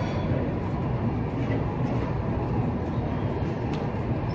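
Steady low rumbling background noise in a gym, even and unbroken, with no distinct events.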